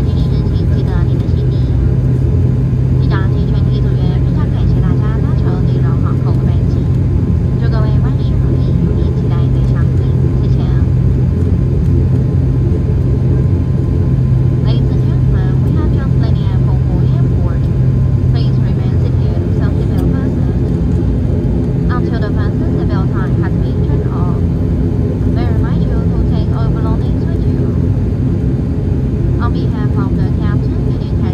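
ATR 72-600's turboprop engines and propellers running steadily, heard inside the cabin as a loud drone with a low hum that weakens about two-thirds of the way through. Faint passenger voices underneath.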